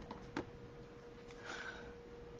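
Faint handling of cardstock paper: two small clicks in the first half second and a soft brief rustle about a second and a half in, over a faint steady electrical whine.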